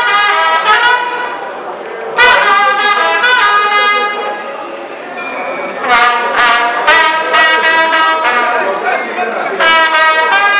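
Brass instruments, trumpets among them, playing loud held notes in short phrases. Each phrase starts sharply, about two seconds in, near six and seven seconds, and again at the end, over people talking.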